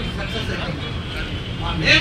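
A man speaking into a handheld microphone, faint at first and loud near the end, over a steady low background rumble.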